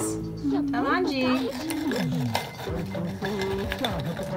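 People laughing over background music that holds long, steady notes, with a light clink.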